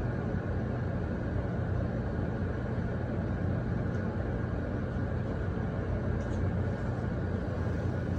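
A steady low rumble with a faint constant hum and no distinct events.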